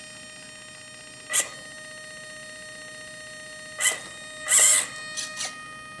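1/18-scale RC crawler's small electric drive motor and gears whirring in a few short bursts as the proportional throttle is blipped, the longest a little past the middle, over a steady high-pitched electronic whine.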